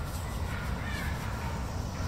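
A crow caws faintly over a steady low rumble and hiss.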